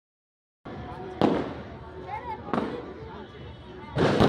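Fireworks going off: two sharp bangs about a second and a half apart, each trailing off in an echoing tail, over a steady din with voices.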